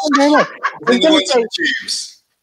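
A woman laughing amid talk, with voices breaking into short, pitched exclamations.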